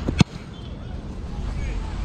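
A punter's foot striking an American football once, a single sharp thump just after the start, followed by steady low wind noise on the microphone.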